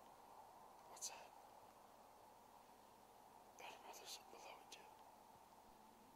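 Near silence with a steady faint hiss, broken by soft whispering: once briefly about a second in, then a short run of whispered sounds from about three and a half seconds in.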